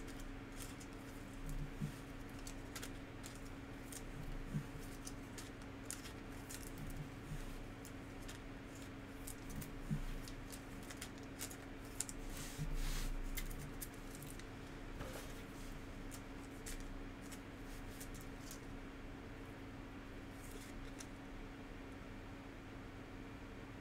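Foil wrapper of a Panini Mosaic basketball card pack being handled and torn open by hand, with scattered crinkles and clicks and a louder stretch of crinkling about twelve seconds in, as cards are shuffled between the fingers. A steady low hum runs underneath.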